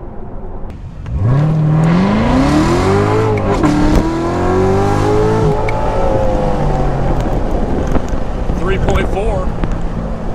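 2016 Corvette Z06's supercharged V8, heard from inside the cabin, accelerating hard from about a second in: the revs climb, drop at an upshift about three and a half seconds in, climb again and then ease off after about five and a half seconds, the engine running on under load to the end.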